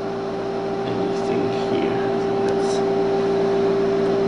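Steady electrical hum with one strong tone, from the transformer and high-voltage bench supplies powering a vacuum-tube logic module.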